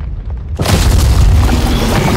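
Film sound design: a deep rumble, then about half a second in a sudden huge crash of rock and earth with a heavy low boom that keeps rolling on, as giant were-worms burst out of the ground.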